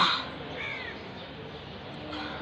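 A crow caws once, short and loud, at the start. A fainter, higher bird call follows about half a second later over steady outdoor background noise.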